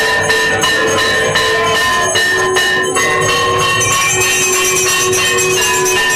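Temple aarti bells being rung rapidly: a dense stream of metallic strikes over held ringing tones, whose pitch shifts about halfway through.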